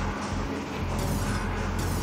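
Background music with held low notes, running steadily under the yoga instruction.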